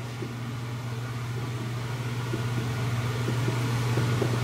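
Steady low hum that slowly grows louder, with a few faint taps of a finger on the controller's keypad buttons.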